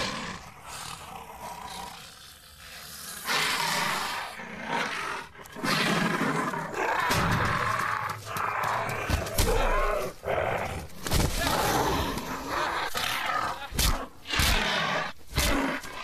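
Film soundtrack of a violent struggle: loud animal-like cries and grunts over film music, with a run of sharp knocks and hits in the second half.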